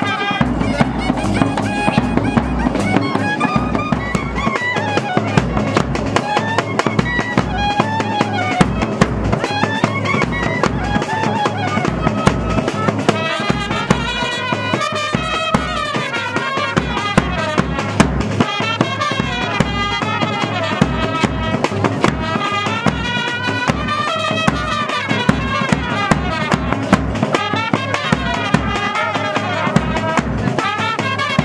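Live band music: a brass horn playing a wavering melody over a steady, driving drum beat.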